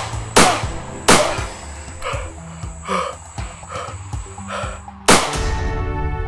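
Handgun shots from a film soundtrack over background music: two shots in the first second or so and a third about five seconds in, with a man's short gasps between them.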